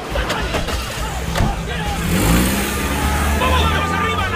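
A car engine starts about a second and a half in, revs up, and then runs with a steady low drone as the car pulls away.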